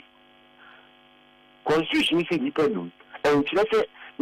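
A steady electrical hum fills a pause in the talk, then a man's voice comes in about a second and a half in and speaks two short phrases through the rest of it.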